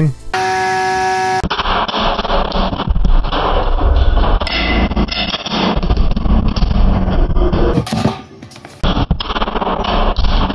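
Antweight spinner combat robot under test: a short steady motor whine, then several seconds of loud rattling noise as its steel blade spins and strikes inside a plastic tote, dropping away briefly near the end. Background music plays along.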